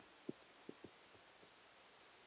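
Near silence: room tone with three faint, short low thumps in the first second.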